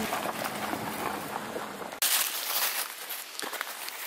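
Crunching on a gravel road strewn with dry leaves. About halfway in it gives way to a quieter outdoor hiss with a few light clicks.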